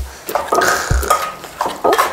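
Dull thuds of a wooden pestle pounding in a large mortar, two strokes about a second apart with kitchenware clatter between them, as shredded green papaya and chillies are bruised for som tam.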